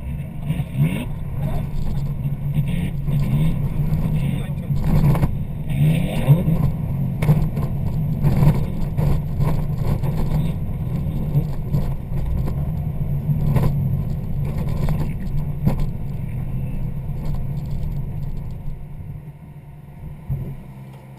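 Rally car engine heard from inside the cabin, driven hard on a snowy stage: the revs rise and fall repeatedly with gear changes, with a few sharp knocks along the way. Near the end it drops off as the car slows to a stop.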